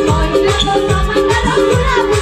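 Live Nepali Teej folk song: girls singing over madal drum strokes whose low notes fall in pitch, about four to the second, with a short melody figure repeating underneath.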